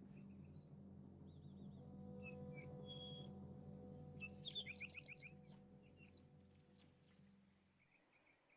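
Quiet film score of soft sustained low chords with a few higher held notes, with scattered bird chirps and trills over it. The chirps come thickest about four and a half seconds in, and everything fades toward the end.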